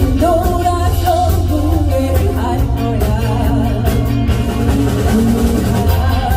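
Live band playing, with a woman singing lead through the PA. Electric guitars, bass, keyboard and a drum kit are under a heavy steady bass, and the voice wavers with vibrato on held notes.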